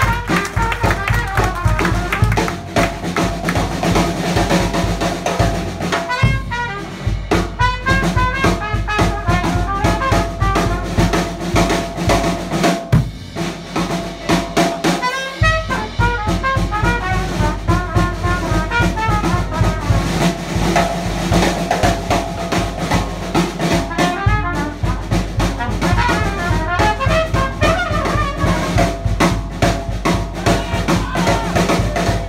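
Live New Orleans-style jazz band playing: cornet with clarinet, piano and drum kit over a steady beat.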